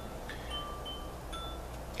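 Wind chimes ringing: a few clear, high metal notes struck one after another at uneven intervals, each ringing on. A low steady hum lies underneath.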